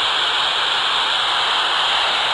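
Steady static hiss from a Baofeng BF-F8+ handheld radio's speaker, squelch open with no voice coming through, while it listens for the SO-50 satellite's downlink.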